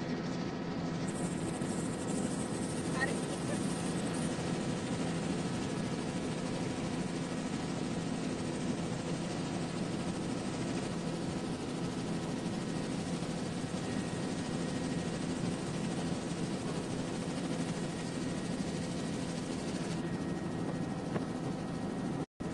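Helicopter cabin noise in flight, heard from inside: the steady drone of the rotor and engine, with a set of low hum tones that holds level without change.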